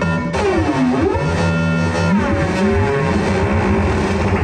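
Moog modular synthesizer played live, with layered sustained notes. About a second in, one tone glides down in pitch and back up, and more gliding notes follow.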